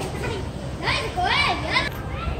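Children's voices calling out at play, a few high-pitched shouts rising and falling in pitch in the second half, over steady low background noise.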